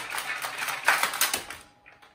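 Rapid clicking and rattling of hard plastic toy parts, a quick run of sharp clicks that stops shortly before the end.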